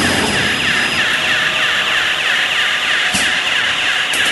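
Automatic cling film rewinding machine running steadily: a loud, dense mechanical noise with a fast repeating pattern, and a short knock a little after three seconds in.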